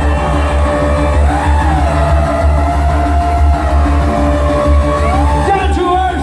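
Live synthpop music played loud over a concert PA, with a steady pulsing bass and a held melody line that bends up and down in pitch.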